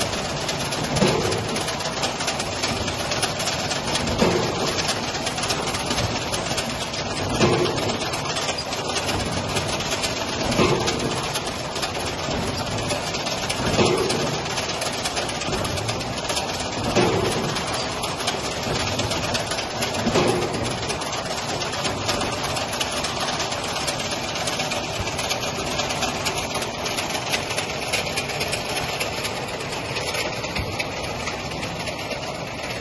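Lubricant-oil filling line and its chain conveyor running with a steady mechanical hum, carrying plastic jerrycans. A heavier thump comes about every three seconds, seven times, then stops about two-thirds of the way through.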